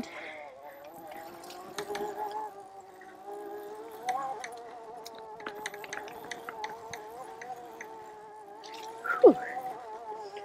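Oset 24R electric trials bike's motor whining steadily as it is ridden, its pitch wavering slightly with the throttle, with scattered clicks and rattles as it rolls over a rough grass track.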